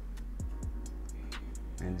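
Background music: a hip-hop-style beat of steady ticking hi-hats, about four a second, over low kick drums.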